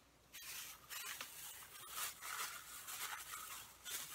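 Faint rustling and scraping of a small cardboard box and its packing being handled and opened by hand, with a few light clicks and taps.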